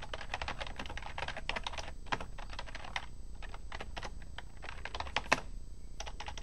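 Typing on a computer keyboard: quick, irregular runs of key clicks with brief pauses, and one louder keystroke near the end.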